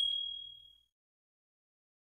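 A bell-like 'ding' sound effect, struck just before this point, rings out as one clear high tone and fades away within the first second, followed by silence.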